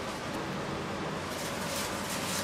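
Steady kitchen room noise: an even low hum and hiss with no distinct knocks.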